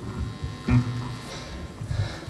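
Loose, amplified band gear on a rock stage between songs: one short low note, likely from the bass, about two-thirds of a second in, over a faint steady amplifier buzz.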